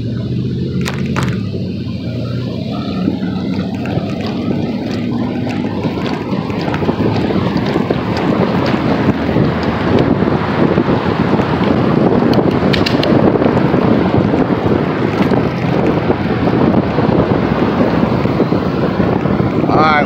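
Wind buffeting a phone's microphone while the phone is carried along quickly, building from a few seconds in and staying heavy, over street traffic. A vehicle's low, steady engine hum is heard at the start.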